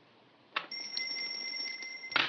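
A call bell rung to summon the waiter: a sharp start about half a second in, then a steady high ring that goes on for about a second and a half and stops near the end.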